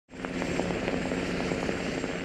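MH-60R Sea Hawk helicopter hovering overhead: a steady engine and rotor drone with a regular rotor beat, cutting in abruptly at the start.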